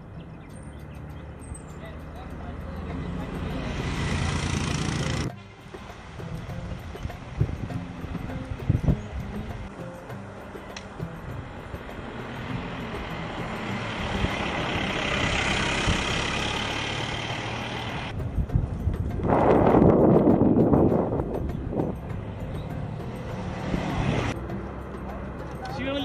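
Wind rushing over a bike-mounted action camera's microphone while cycling downhill, with road noise, swelling and fading. It breaks off abruptly about five seconds in and again near the end.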